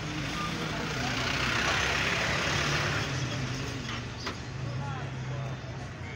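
Street traffic: a motor vehicle's steady engine hum, with a rush of noise that swells about a second in and fades by three seconds, as of a vehicle passing close. Voices are faint underneath.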